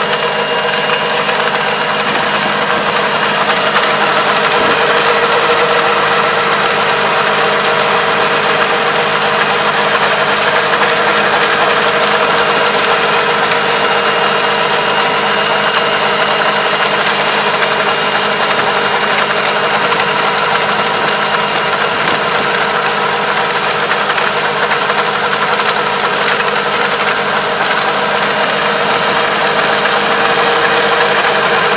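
Farm tractor's diesel engine running steadily under load as it pulls a Kobashi levee-plastering machine, whose rotor churns and packs mud into the paddy bank.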